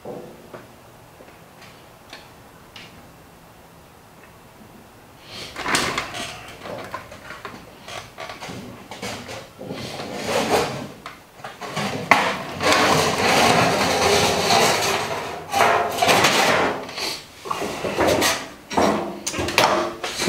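Sheet metal being clamped and bent on a hand-operated sheet metal brake: irregular metal clanks and knocks with the thin sheet rattling and scraping, starting about five seconds in.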